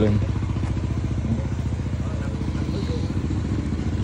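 Small motorcycle engine running at low speed, a steady low hum that holds at an even level throughout.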